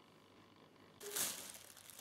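Quiet room tone, then about halfway through a thin plastic carrier bag starts crinkling and rustling as cats paw at it and push into it.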